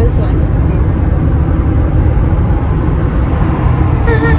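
Road and wind noise inside a moving car at highway speed: a loud, steady low rumble.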